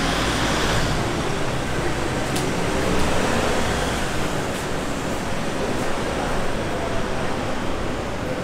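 City street ambience: a steady wash of traffic and urban noise, with a vehicle engine's low hum that fades about halfway through.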